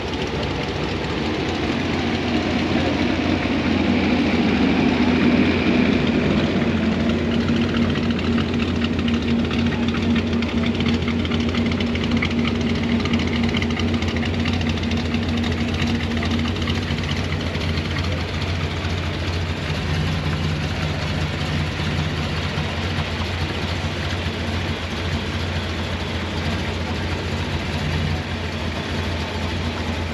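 Classic 1960s Chevrolet Chevelle's engine idling as the car crawls past at walking pace, loudest a few seconds in and easing off after about fifteen seconds, over a steady low engine hum.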